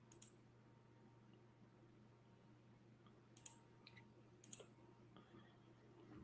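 Faint computer mouse clicks over near silence: one just after the start, then about three more a second or so apart midway through.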